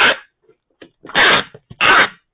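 Clear packing tape pulled off a handheld tape-gun dispenser onto a cardboard box, three loud, short screeching pulls: one at the start and two close together past the middle.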